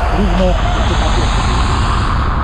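Outdoor location sound: a steady low rumble with a hiss over it, and people's voices talking faintly in the first half second.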